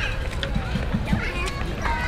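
Several children's voices calling and chattering at once, in short high rising and falling cries, over a steady low rumble.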